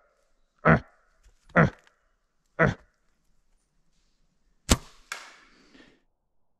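Three short grunting calls about a second apart, then a bow being shot: a sharp crack of the string's release, followed about half a second later by the thud of the arrow striking.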